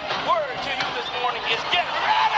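A man's voice shouting through a microphone in a preacher's loud, excited delivery.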